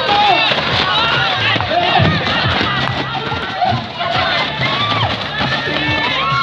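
A crowd of spectators shouting and cheering, many voices overlapping, over music with a steady beat.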